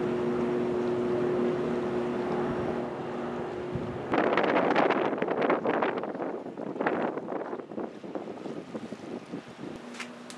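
A steady mechanical hum with two low tones runs for about four seconds, then gives way to loud, gusty wind buffeting the microphone that fades over the following seconds.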